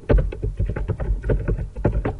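Computer keyboard typing: a quick, even run of keystrokes, about eight clicks a second.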